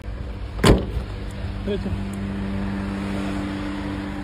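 Car engine rumbling steadily. About a second in there is one short loud sound, and from about halfway a long, steady, low two-note tone is held.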